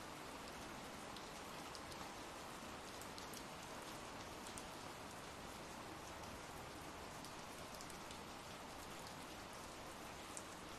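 Faint, steady ambient rainfall: an even hiss with scattered light drop ticks.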